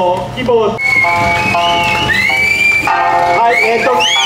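Okinawan Eisa folk music with a voice singing held and sliding notes.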